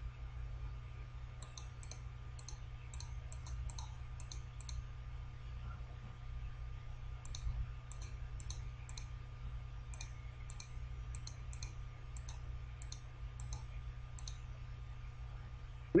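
Computer mouse button clicked again and again in two runs, about a second in and again from about seven seconds, as word tiles are picked up and dropped; a steady low electrical hum lies underneath.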